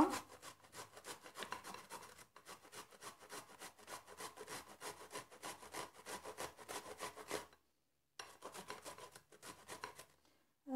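A whole cucumber, skin on, being rasped back and forth across a flat metal hand grater in a quick, even run of short scraping strokes, with one brief pause about two seconds before the end.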